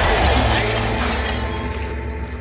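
Glass shattering: a sudden crash, then about a second and a half of breaking and falling shards that fade away, over music with a steady bass.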